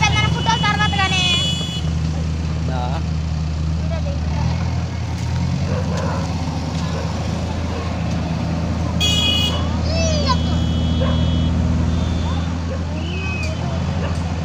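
A vehicle engine running steadily at a low hum, under the calls and shouts of people standing around.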